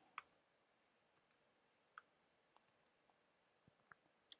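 Faint computer keyboard keystrokes: a handful of separate, sparse key clicks, about six in four seconds.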